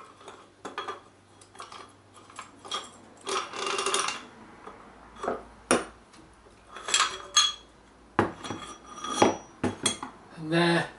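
Metal tools and puller parts clinking and knocking as they are handled and set down on a wooden workbench. A run of small clicks comes first, then a scraping rattle about three seconds in, then several sharper knocks in the second half.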